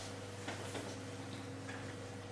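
Quiet room tone: a steady electrical hum with a couple of faint clicks about half a second in.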